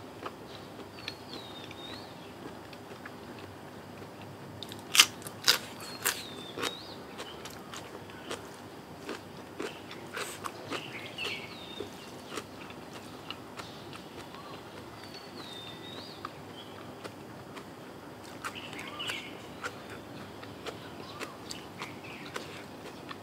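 A person eating close to the microphone: sharp crunching bites of crisp raw vegetable, loudest in a cluster about five to six seconds in, with smaller crunches and chewing scattered through. Short bird chirps sound in the background several times.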